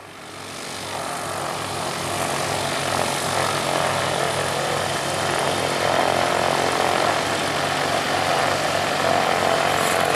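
An engine running steadily, with a low pulsing beat about three times a second, fading in over the first second or two.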